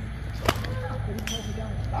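Paracord shepherd's sling cracking once as a throw is released: a single sharp snap about half a second in.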